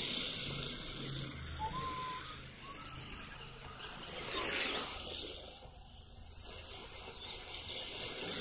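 RC drift car sliding around on asphalt: a hissing whine of the electric motor and hard drift tyres scrubbing across the pavement, swelling as the car sweeps past close by about four seconds in and fading as it moves off.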